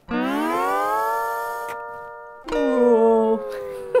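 Homemade rubber-chicken toy (a rubber glove stretched over a plastic cup and blown through a drinking straw) sounding two long pitched notes. The first slides up in pitch and then holds; the second starts about two and a half seconds in, steadier, and fades near the end.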